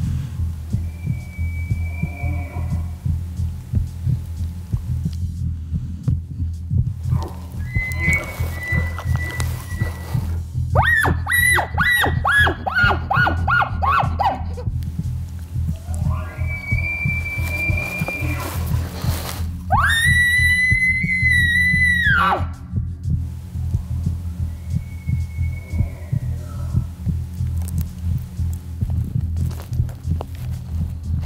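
Bull elk bugling several times: high whistled calls, one followed by a rapid run of chuckles, the loudest a long held whistle about two-thirds of the way through, others fainter. Under them runs a steady low throbbing beat.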